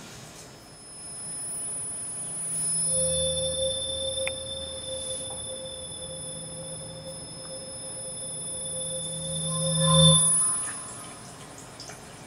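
A sustained drone in a film's soundtrack: several steady high tones held over a low hum. It comes in about three seconds in, and the hum swells before it all stops about ten seconds in, with the highest tone lingering a moment longer.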